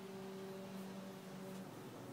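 A faint steady hum of a few evenly spaced tones, with its lowest tone dropping away about one and a half seconds in.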